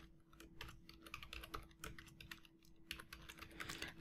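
Faint computer keyboard typing: a quick, irregular run of keystrokes.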